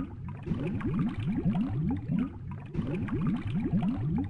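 Cartoon bubbling-water sound effect: a dense run of quick rising bubble pops, looped so that it breaks off and starts over about every two seconds.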